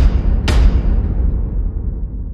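Cinematic logo-intro sting: deep boom-like hits, one right at the start and another about half a second in, each followed by a heavy low rumble that slowly fades away.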